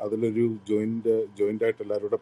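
Only speech: one person talking in Malayalam.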